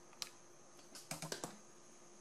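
Light handling clicks: one sharp click, then about a second in a quick run of four or five clicks and taps, as a hot glue gun and a small plastic charm are handled over the ribbon bow.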